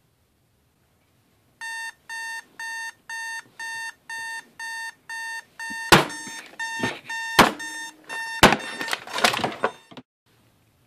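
Digital alarm clock beeping about twice a second, starting after a second and a half of silence. Over its last few seconds come several loud knocks of a hand slapping at the clock, and the beeping stops near the end.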